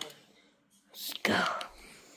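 A person's voice, once and briefly about a second in: a short breathy, whispered utterance with no clear words.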